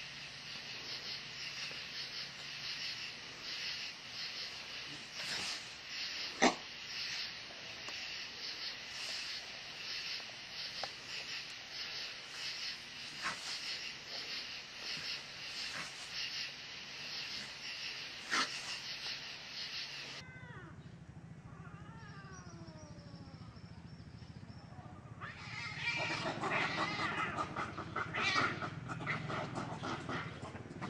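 Cats yowling and caterwauling. The cries start faint and gliding in pitch about two-thirds of the way in, then turn louder and harsher near the end. Before that there is a steady high hiss with a rhythmic pulse and a few sharp clicks.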